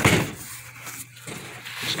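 A large cardboard game box being turned over and handled: a sharp bump or scrape at the start, then the cardboard rustling and sliding.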